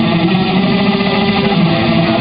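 A guitar played live, a continuous stretch of an original song.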